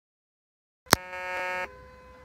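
A sharp click about a second in, then a steady buzzy tone lasting about half a second.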